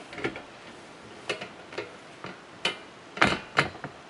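Wire door of a plastic dog kennel being swung shut and latched: a string of sharp clicks and rattles, the two loudest close together near the end.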